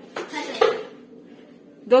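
Steel kitchen utensils clattering at a gas stove: a couple of quick metal knocks and clinks of a steel pot and spoon in the first half second or so, with a short ring.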